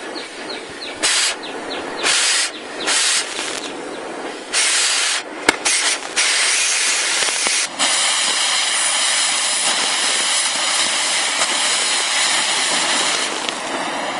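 Oxy-acetylene cutting torch hissing: several short bursts of gas in the first five seconds with a sharp click, then a steady hiss from about eight seconds as the flame plays on a zircaloy fuel-rod tube to heat it red hot.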